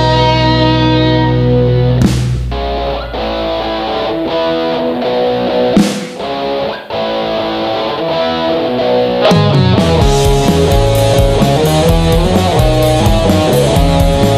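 Electric guitars with bass and drums playing an instrumental rock passage. A full chord rings over a low bass note for about two and a half seconds, then a thinner guitar part with a few sharp drum hits. About nine seconds in, the full band comes back in with steady cymbal beats.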